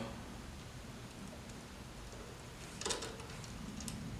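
Quiet room tone with a few faint small clicks about three seconds in, from fingers turning the carburetor's emulsion tube and main jet out by hand.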